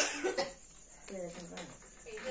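A person coughs once, sharply, right at the start, followed by short stretches of someone talking.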